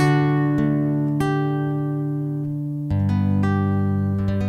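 Acoustic guitar playing the song's closing chords: a chord struck at the start, single notes added about half a second and a second in, then a last chord about three seconds in, each left to ring and fade.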